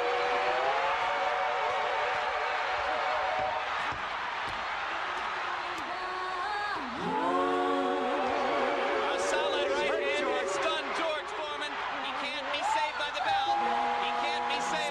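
Female vocal group singing in harmony, long held notes with vibrato over arena crowd noise. From about nine seconds in, short sharp cries and whoops rise over the singing.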